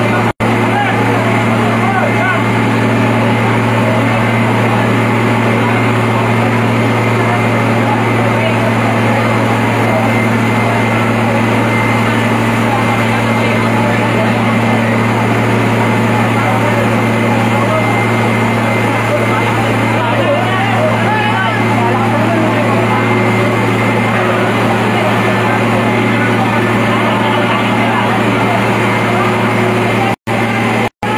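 Fire truck engine running steadily to drive its water pump, a constant low drone, with many people talking and calling over it.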